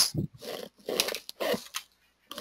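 Computer keyboard keys clicking in a few short separate strokes as a file path is typed, some of them with a brief low sound.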